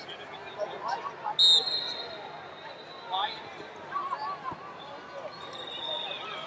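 Wrestling arena crowd noise with coaches and spectators shouting. A loud, shrill whistle blast comes about a second and a half in and holds for more than a second, and a fainter whistle sounds near the end.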